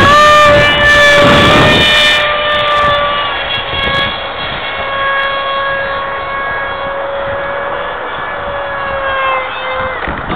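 Homemade foam RC F-22's electric motor and propeller whining at high power. The pitch rises just at the start and then holds steady. The sound grows fainter over the first few seconds as the plane flies off.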